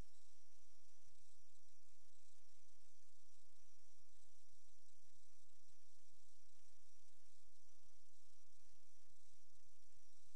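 Steady electronic hiss and hum with faint high-pitched whines, unchanging throughout: the recording noise of a sewer inspection camera system.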